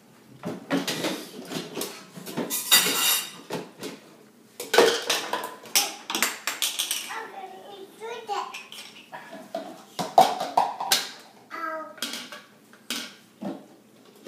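Toy kitchen pieces clattering as toddlers handle them, a string of sharp knocks and clicks of a toy kettle, coffee maker and cupboard on a play-kitchen counter, mixed with toddler babble that is clearest in the second half.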